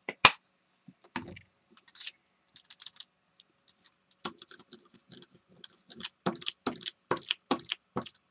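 A rubber brayer rolled back and forth through wet acrylic paint on paper. From about halfway in it makes a run of tacky clicking strokes, roughly two or three a second. A couple of sharp clicks come at the very start.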